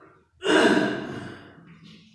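A sudden loud breath close to the microphone, starting about half a second in and trailing off over about a second.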